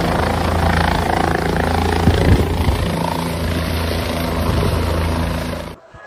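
A steady, low engine-like drone with a constant hum and a layer of noise above it, which cuts off abruptly shortly before the end.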